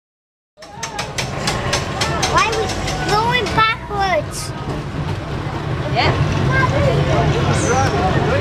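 Steady low rumble of an electric tram heard from its upper deck, with voices talking over it. The sound starts suddenly about half a second in, with a run of sharp clicks over the first couple of seconds.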